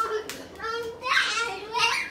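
Young children's voices, laughing and calling out as they play, in short high-pitched spurts.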